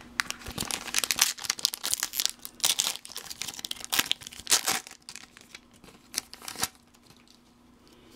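Foil booster-pack wrapper crinkling and tearing as a Pokémon trading card pack is opened, a dense run of crackles that stops about two-thirds of the way through.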